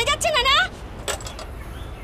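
A woman's voice speaking for under a second, then a short sharp click about a second in, over a low steady background rumble.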